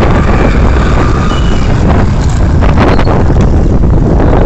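Loud, steady wind rumble on the microphone of a phone filming from a moving two-wheeler, mixed with road and engine noise.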